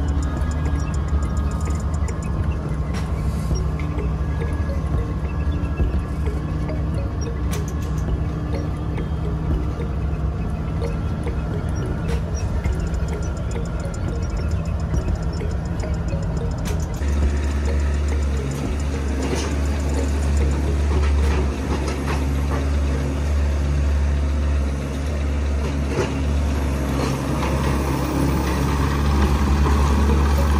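Tractor engine running steadily as it pulls a wheel rake through cut hay, its low drone growing louder a little over halfway through, with music playing over it.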